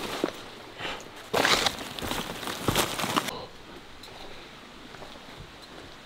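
A hiker's footsteps on a forest trail with the rustle of jacket and backpack. There is a louder brushing rustle about a second and a half in. After about three seconds it drops to a faint, steady background.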